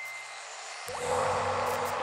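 Commercial sound design: a steady hiss with a thin high tone that fades out, then about a second in a deep drone sets in with a short rising swoosh and grows louder.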